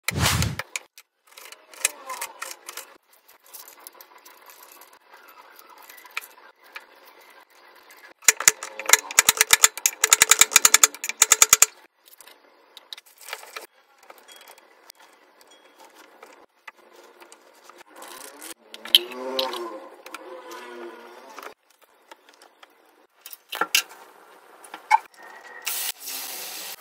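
Kitchen preparation sounds: scattered handling noises, then a fast run of sharp taps lasting about four seconds in the middle, and a brief wavering pitched sound later on. Near the end, hot oil starts to sizzle loudly as batter-coated bajji chillies go into the frying pan.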